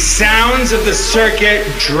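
A man's spoken voice, part of the dance mix, talking over a steady low bass drone.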